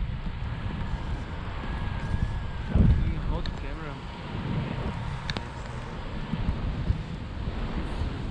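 Wind buffeting an action camera's microphone in flight under a tandem paraglider, with a louder gust about three seconds in.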